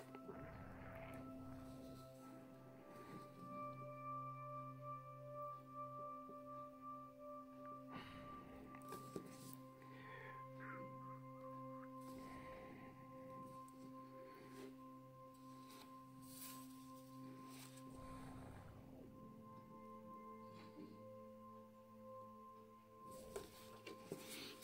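Quiet background music of soft held tones that change every few seconds, with a few faint clicks.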